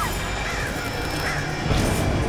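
Horror-film trailer sound effects: a dense, noisy rumble with faint high screeches over it, swelling into a low hit near the end.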